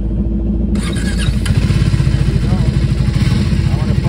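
Triumph 400 single-cylinder motorcycle engine running in neutral. About a second in it gets suddenly louder as the throttle is opened, and it keeps running at raised revs.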